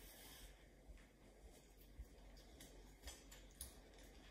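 Near silence with a faint pencil scratch as a line is drawn along a ruler on paper, followed by a few light ticks.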